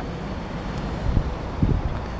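Wind on the camera microphone: a steady rumbling hiss, with a couple of low bumps in the second half.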